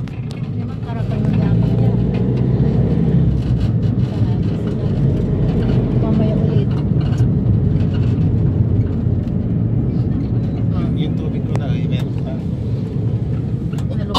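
Steady low rumble of a vehicle's engine and road noise while driving along a street, with faint voices underneath.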